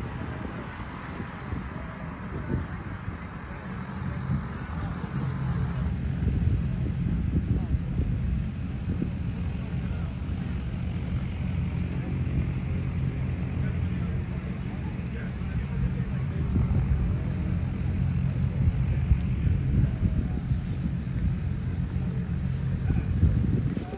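Propeller aircraft engines droning steadily overhead: a low hum that grows stronger about six seconds in, over a low rumble.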